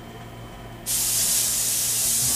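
A loud steady hiss starts suddenly about a second in, over a low steady hum.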